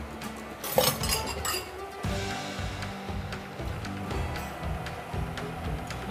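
Background music, with a couple of sharp clinks of kitchenware against the wok about a second in.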